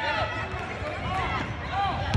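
Young children's voices calling out during a basketball game on a gym court, short high cries scattered over the patter of running feet.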